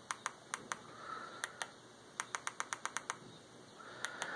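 A series of short, faint clicks as the highlight is stepped key by key across Kodi's on-screen keyboard. They come singly at first, then in a quick run of about eight in the last second and a half.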